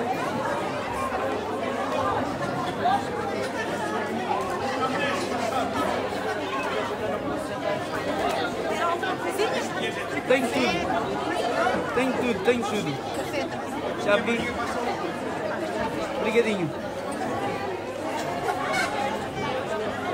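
A crowd of people chattering among themselves, many voices at once, with no music, and a few short sharp clicks.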